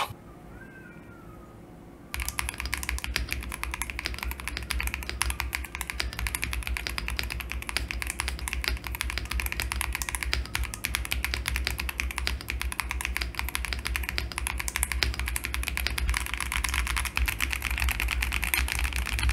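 Continuous fast typing on a custom mechanical keyboard, a GMK67 base with Leobog Greywood switches, black-on-white keycaps, Poron foam and a tape mod. A dense stream of key clacks starts about two seconds in and runs on steadily.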